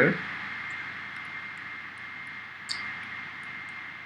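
Steady background hiss with a thin, constant high whine from the recording setup, with one faint click about two and a half seconds in.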